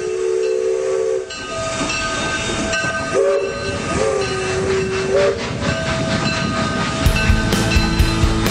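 A train whistle sounding a held chord, blown again in short blasts that swoop up at their start, over steady rumbling hiss. About seven seconds in, rock music with a steady beat comes in.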